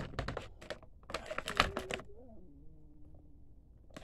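Clear plastic packaging being handled, a quick run of clicks and crackles for about two seconds that then stops.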